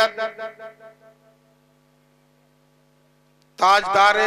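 A man's chanted recitation over a microphone and loudspeaker, a held line fading out, then about two seconds of steady electrical hum from the sound system before his voice comes back in near the end.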